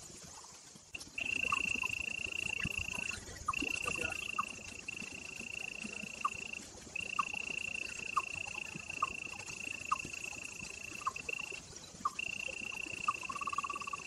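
Animal calls outdoors: a steady high-pitched trill that starts about a second in and breaks off briefly three times, with short chirps about once a second over it.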